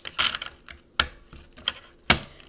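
A deck of Kipper fortune-telling cards being handled: a few sharp clicks and snaps, with a short rustle near the start.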